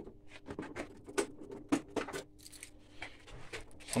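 Znen four-stroke scooter's original flasher relay ticking with the hazard warning lights on: a quick, slightly uneven run of dry clicks over a faint steady hum, the sign that the flasher unit now works.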